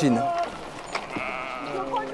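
A sheep bleating once: a long, wavering call starting about a second in and lasting about a second.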